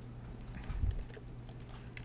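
Computer keyboard keys pressed for the Ctrl+R shortcut: faint clicks and a soft thump a little under a second in, over a low steady hum.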